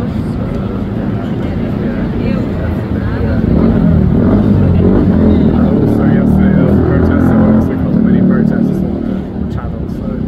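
Road traffic with a motor vehicle's engine running, which grows louder from about three and a half seconds in and falls away again near the end as it passes, under the voices of people talking close by.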